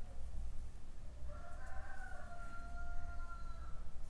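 A faint rooster crowing in the background: one drawn-out call that starts about a second in, lasts about two and a half seconds, and dips slightly in pitch at its end.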